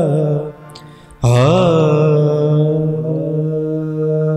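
Gurbani kirtan ending: a sung line over harmonium falls and dies away. After a brief drop in level, the harmonium chord and voices come back in suddenly about a second in, with a short upward slide, then hold a long sustained closing note.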